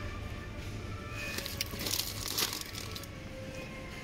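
Plastic snack bag of rice chips crinkling as it is handled, a cluster of crackles lasting about a second and a half in the middle, over faint background music.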